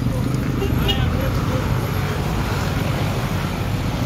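Busy street ambience: a steady low rumble of road traffic and a nearby minibus, with the indistinct chatter of people around.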